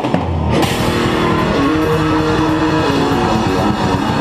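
Heavy metal band playing live, heard close to the drum kit: fast drumming with cymbals under a distorted electric guitar riff. At the very start the drums drop out for about half a second while a low note holds, then the drumming comes back in.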